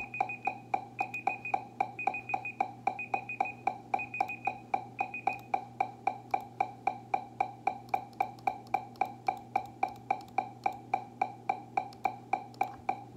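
Metronome click track ticking at an even tempo, about four clicks a second, with higher-pitched accent clicks on some beats through the first five seconds. A low steady hum runs underneath.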